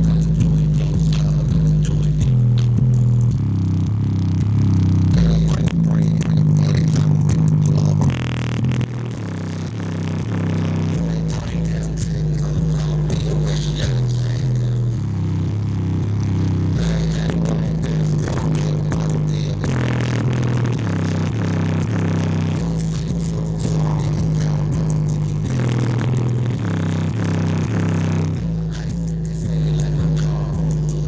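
JBL Charge 4 portable Bluetooth speaker playing bass-heavy music with its low-frequency bass mode turned up full. A loud, deep bass line steps between a few notes in a repeating pattern, and the bass is clipping, giving a distorted, rattly edge.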